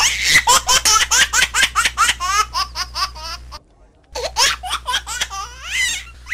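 High-pitched laughter in a quick run of laughs, about five a second, over a steady low hum. It stops for half a second about three and a half seconds in, then starts again.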